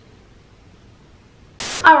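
Low room hiss, then about one and a half seconds in a short, loud burst of static-like hiss that starts and stops abruptly, just as a woman starts to speak.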